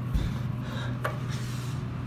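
Steady low hum inside an Otis elevator car, with a dull thump just after the start and a light click about a second in.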